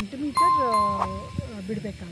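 Bell-like notification ding from a subscribe-button animation: one steady bright tone that starts suddenly about half a second in and rings for about half a second.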